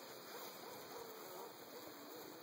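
Faint buzzing of honeybees from an open hive box, with a few wavering tones over a steady hiss.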